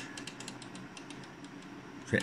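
Faint steady hum with a few light, high clicks during the first second.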